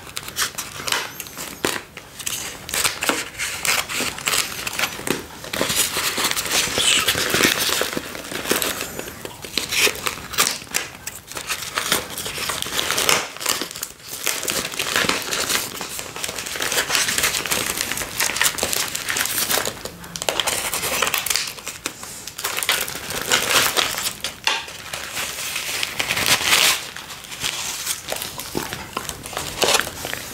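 Clear plastic packaging around a plastic tray of mochi ice cream crinkling and crackling in bursts as it is cut open with scissors and handled.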